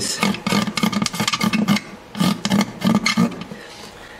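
Hand tool scraping old varnish off the bridge of a vintage Gibson L-00 acoustic guitar in quick back-and-forth strokes, about three or four a second. After a short pause about halfway, three more separate strokes follow.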